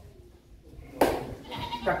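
A brief pause in a man's preaching, then a sharp breath or consonant about a second in and his voice starting again near the end.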